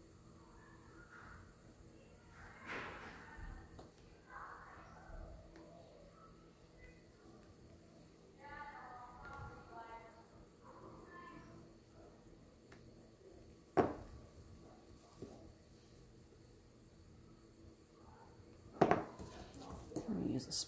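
A pointed metal clay tool scrapes faintly along the edge of a damp clay sculpture as it is carved. Two sharp knocks on the worktable come in the second half, the louder one near the end.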